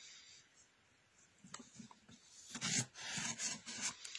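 Pen scratching on paper in short irregular strokes as a line of handwriting is written, starting about a second and a half in.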